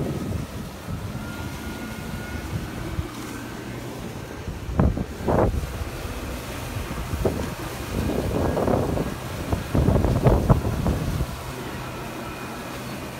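Wind buffeting the microphone on a moving boat over the steady drone of a boat engine and rushing water, with louder gusts about five seconds in and again in the second half.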